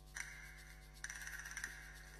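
Faint background music: two brief, steady, high chiming notes, the first just after the start and the second about a second later, over a low steady hum.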